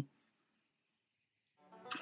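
Near silence: the audio drops out completely after the voice stops, and a voice starts up again faintly near the end.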